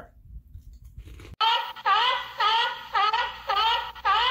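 Faint crunching of a cheese cracker being chewed. About a second and a half in, a sound effect cuts in suddenly: a quick run of about eight short, high-pitched calls that each bend upward, roughly three a second.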